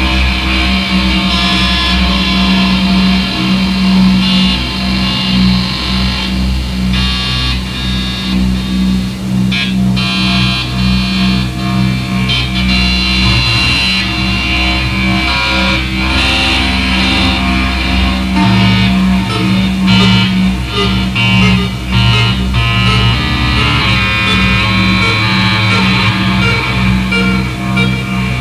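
Live electronic noise music played on iPad apps: a low tone pulsing rapidly over a deep bass layer, with stacked high tones and glitchy clicks and stutters cutting in and out.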